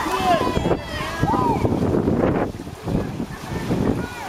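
Several voices shouting at a water polo game, over wind rumbling on the microphone.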